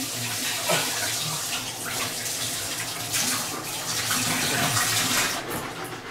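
Kitchen tap running hard, water splashing into a sink; the rush thins out about five seconds in.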